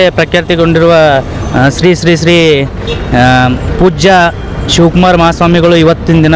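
A man speaking in close-up into a handheld microphone, with short pauses between phrases.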